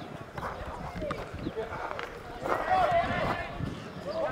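Voices calling out across an open football pitch, a louder shout about two and a half seconds in, with a few short knocks.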